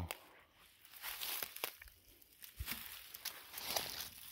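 Footsteps crunching through dry leaf litter and brush on a forest floor: a few uneven steps with sharp clicks of snapping twigs.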